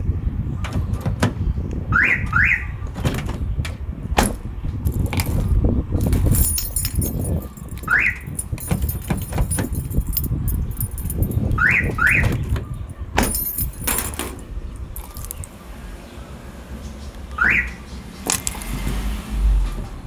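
Aftermarket car alarm siren giving short rising chirps: two quick chirps about 2 s in, one at 8 s, another pair near 12 s and a single chirp near 17.5 s. The alarm is responding to remote signals replayed from a Flipper Zero. Sharp clicks fall between the chirps over a steady low rumble.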